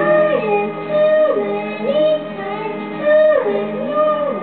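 A young girl singing karaoke through a microphone over a backing track, holding notes and sliding up and down between them.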